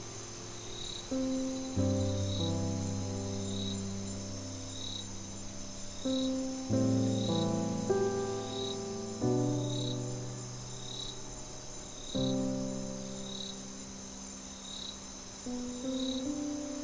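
Slow, soft piano music, chords struck every few seconds and left to ring, with crickets chirping over it: a steady high trill and a separate chirp repeating about every second and a quarter.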